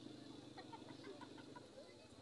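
Near silence: faint open-air background with a low steady hum and a few faint, short chirps.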